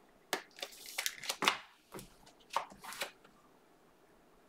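Panini Prizm basketball trading cards being handled and slid against one another at close range: a quick series of short swishes and clicks for about three seconds, then stopping.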